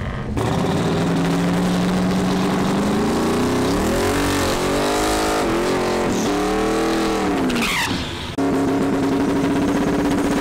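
Single-turbo 408 LS V8 in a Camaro drag car, revving during a burnout at the starting line, with the rear tyres spinning. The engine note holds steady, then rises and falls several times, and about eight seconds in jumps suddenly to a higher, steadier note.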